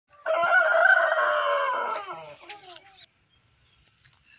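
A rooster crowing once: one long call that trails off into falling notes, ending about three seconds in.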